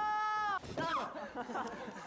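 Excited shouting: one long held "wah!", then a jumble of excited voices talking over each other.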